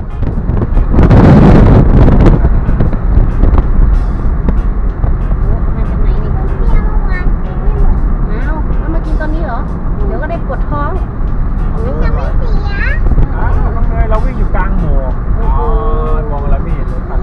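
Mitsubishi Mirage driving on a mountain road: a steady low rumble of road and wind noise, with a loud rush of noise about a second in. Voices are faintly heard over it later on.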